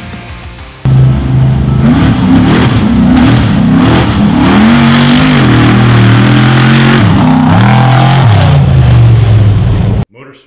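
Mud truck's 454 big-block V8 revving hard, its pitch rising and falling again and again as it churns through a mud pit; it starts suddenly about a second in.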